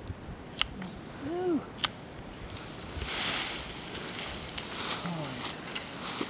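Brush and twigs rustling and crackling as a freshly cut hazel stick is pulled out of a honeysuckle-tangled thicket, with two sharp snaps in the first two seconds and a louder rustle about three seconds in.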